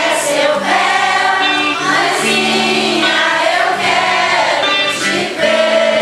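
A choir of voices singing a hymn, with steady low notes held beneath the melody and changing pitch every second or so.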